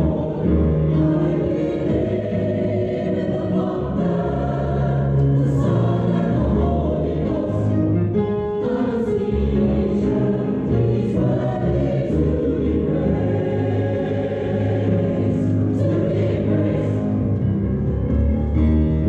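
Church choir singing a gospel anthem in held chords, with crisp consonants cutting through now and then.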